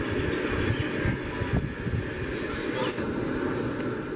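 An express passenger train's coaches running past at high speed, as the last coach pulls away: a steady rush of wheels on the rails and track noise.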